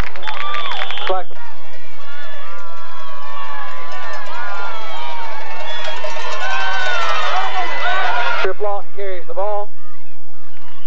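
Spectators at a football game talking and shouting, many voices overlapping so that no words stand out. One voice rises above the rest for about a second near the end.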